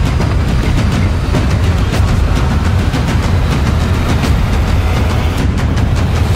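Action-trailer soundtrack: music under a loud, steady low rumble, with a fast run of sharp hits and impacts layered over it.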